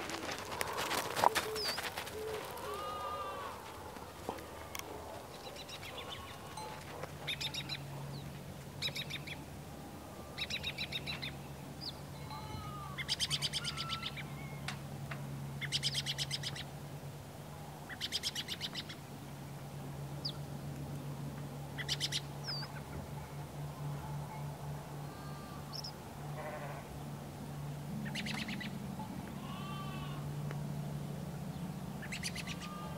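Farm ambience: birds calling in short, rapid chattering bursts every two to three seconds over a low steady hum, with a sharp knock about a second in.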